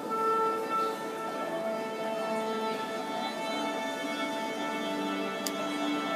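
Symphony orchestra tuning: strings and other instruments hold long sustained notes at various pitches, overlapping and shifting, with no tune.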